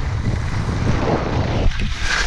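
Wind buffeting the microphone of a helmet camera during a ski run, over the hiss of skis sliding on snow; the hiss swells into a scrape just past a second in as the skis turn.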